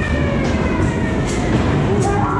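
Ghost train ride car rolling along its track with a steady low rumble, and a faint thin whine slowly falling in pitch above it.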